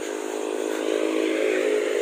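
A motor vehicle engine running steadily, slowly growing a little louder.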